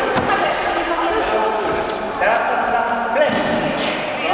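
Voices talking in an echoing sports hall, with a sharp thud right at the start and a few softer knocks later.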